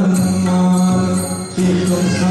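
Male voices singing a Marathi devotional song (a bhajan to Hanuman) in chant-like style, holding one long note that breaks off briefly about one and a half seconds in and then resumes.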